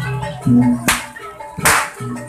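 Javanese jaranan gamelan music: struck metal keys and a low drum beat in a steady rhythm. A sharp crack cuts through a little under a second in and a louder, hissing crack comes near the end, typical of the pecut whip cracked at jaranan performances.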